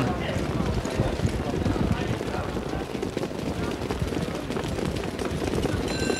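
Hoofbeats of a field of standardbred pacers pulling harness race bikes, a dense irregular patter of hooves, over a background murmur of crowd voices as the horses come up to the start.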